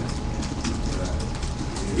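A man's voice, low and faint, over steady room noise.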